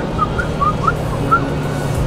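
Steady low rumble of a car cabin on the move, with a run of short, high, whistle-like chirps over it, several a second.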